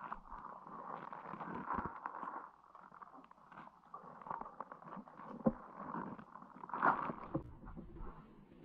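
Muffled, uneven watery noise heard through an underwater camera housing, with scattered clicks and knocks; the sharpest knocks come about five and a half and seven seconds in.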